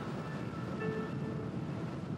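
Steady low rumble of a ship under way, engine and water noise heard on deck, with a few faint held tones about halfway through.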